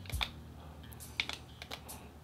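A handful of soft button clicks on a Revtech Phantom 220W vape mod as its buttons are pressed to enter and confirm a PIN, one early and several close together in the second half.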